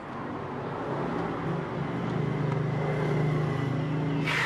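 A motor vehicle engine running with a steady low hum that swells gently toward the end.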